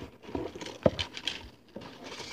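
Close handling noise: light rustling and tapping, with one sharp click a little under a second in.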